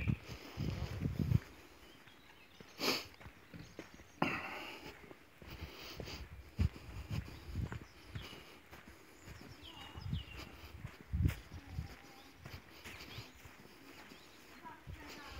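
Footsteps and camera handling of someone walking across grass, with a few faint bird chirps in the background and a sharp click about three seconds in.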